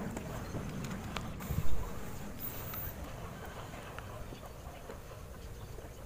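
Faint handling clicks and rustles as a cable plug is fitted into the back panel of an amplified speaker, with one dull thump just under two seconds in.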